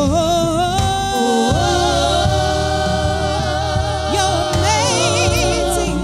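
A woman singing gospel into a microphone over instrumental accompaniment, sliding up into long held notes with vibrato.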